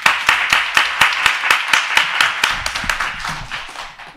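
Audience applause, many hands clapping irregularly, slowly dying down toward the end.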